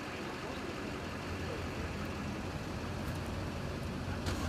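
A vehicle engine idling steadily: a constant low hum under even street background noise.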